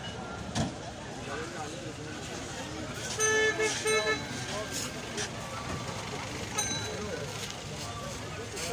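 A vehicle horn sounds three quick toots about three seconds in, over the steady chatter of a crowd of voices.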